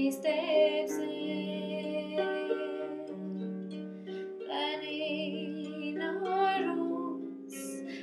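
A woman sings a slow folk ballad to her own harp accompaniment: plucked harp notes ring on throughout, with one sung phrase at the start and another in the middle, and the harp alone between them.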